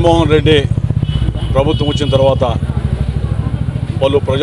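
A man speaking in two short stretches over a steady low rumble of an idling engine, its fast even pulses heard throughout.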